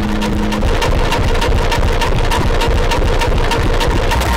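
Harsh noise music: a dense wall of distorted electronic noise with a rapid clicking pulse over a heavy low rumble. A held low drone tone drops out about half a second in.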